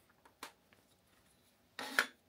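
Quiet room with a faint click about half a second in, then a short rubbing, scraping sound near the end from hands handling objects on a workbench.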